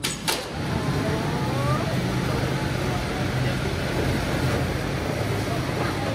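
Mine cage lift running: a steady, loud mechanical hum and rumble, with a sharp knock just after the start.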